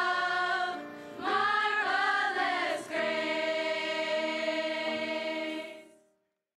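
Large choir of mostly female voices singing a hymn, settling about halfway through onto a long held final chord that fades away near the end.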